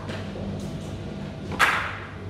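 A single sharp knock, like a hard object handled at a desk, about one and a half seconds in, with a short ringing tail, over a steady low hum.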